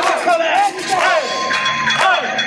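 Hip-hop music with a steady beat, played loud for a breakdance battle, with a crowd shouting and whooping over it.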